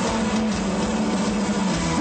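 Live rock band playing loud through a concert PA: a dense wall of guitar and drums over a held low note, with no vocal line.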